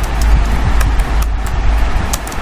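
Steady low rumble and hiss of background noise, with a few faint clicks of computer keyboard keys as text is typed.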